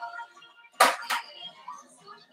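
Television broadcast audio with music playing low in the background. About a second in, two sharp clacks come in quick succession, about a third of a second apart, and are the loudest sounds.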